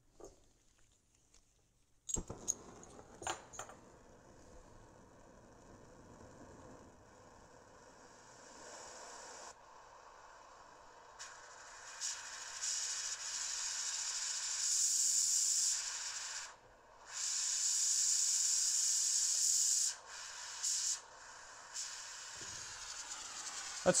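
MAPP gas torch hissing as the gas flows and the flame burns, faint at first and then steady and strong from about halfway, with two brief breaks. A few clicks and knocks about two to four seconds in as the torch is handled.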